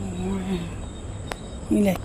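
Crickets trilling steadily in the background, a thin high-pitched tone under a woman's drawn-out 'oh' and the start of her speech; a single click about halfway through.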